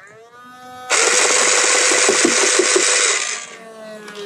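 Overvolted motor of a modified Nerf Vortex Nitron disc blaster revving up with a rising whine. It then fires a continuous burst of discs that rattles for about two and a half seconds, and the motor winds down with a falling whine near the end.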